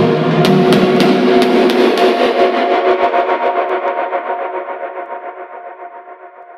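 Dark bass house track ending: the low end drops out, the beat stops about two seconds in, and a held synth chord fades away as its top end is filtered down.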